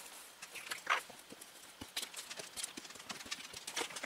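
Paper and card handled on a tabletop: light rustles and a few soft taps, the loudest about a second in.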